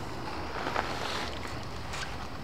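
Steady rushing noise of wind on the microphone.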